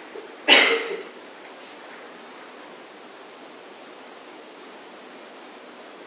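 A single short burst of noise about half a second in, starting with a dull thump, then a steady faint hiss of room tone.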